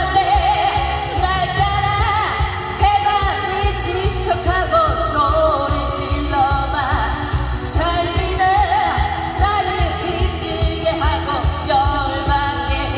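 A woman singing a Korean pop-style song live into a handheld microphone, her voice wavering with vibrato, over amplified backing music with a steady beat.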